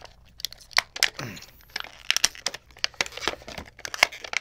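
Clear plastic packet crinkling and crackling in irregular bursts as it is handled and torn open.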